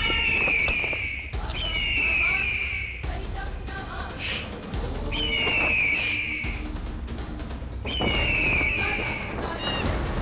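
Four shrill screeches of a bird of prey, each about a second long and falling in pitch, over a dramatic music score. There are two short whooshes between them.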